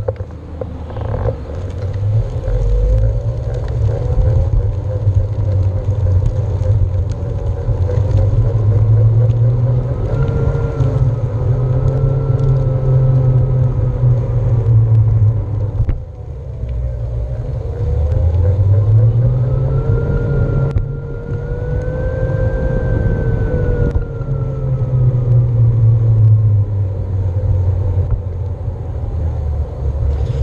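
Onewheel electric board's hub motor whining over the rumble of its tire on pavement. The whine rises and falls in pitch with speed: it climbs over the first ten seconds, drops around the middle, climbs again and slowly falls toward the end.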